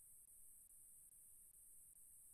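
Near silence: faint steady hiss and room tone.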